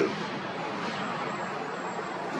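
Steady outdoor background noise, an even hiss without distinct events, with a faint thin high-pitched tone running through it.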